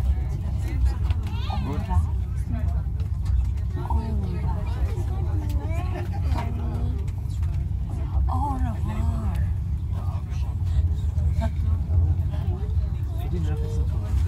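Steady low rumble of a passenger train carriage moving slowly out of a station, heard from inside the carriage, with indistinct voices of nearby passengers now and then.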